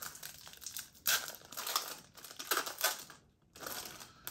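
Foil wrapper of a Pokémon card booster pack crinkling in the hands as it is torn open and the cards are pulled out, in several short rustling bursts with a brief pause near the end.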